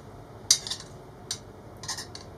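Metal fork clinking against a bowl while scooping up canned tuna: about four short clicks, the sharpest about half a second in.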